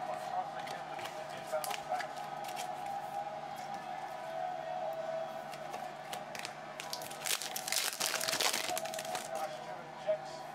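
A foil trading-card pack being torn open and crinkled, a dense crackling rustle lasting about two seconds late on. Before that come scattered light clicks of cards being handled.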